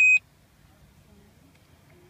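A Smart Start ignition interlock breathalyzer giving a short, loud, high electronic beep right at the start, its alert after a failed breath test (a violation). The rest is faint car-cabin hum.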